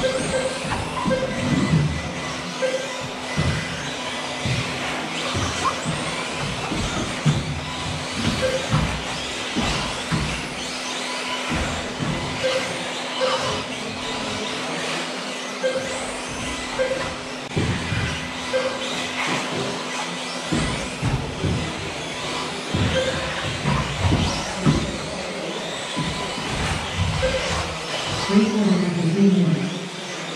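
1/10-scale 2WD off-road RC buggies racing on an indoor astroturf track: the whine of their electric motors runs under a steady clatter of sharp knocks as the cars land and hit the barriers. Short beeps sound now and then.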